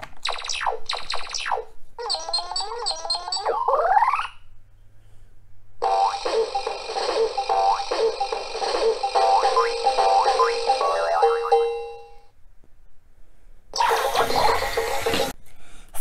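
Fisher-Price Code-a-pillar toy running through its programmed segments, playing electronic sound effects: four quick falling tones, then a warbling sweep that rises at the end. After a short pause it plays a bright electronic jingle of about six seconds, and after another pause a hissing burst of about a second and a half. The run shows that the newly added purple and yellow segments work.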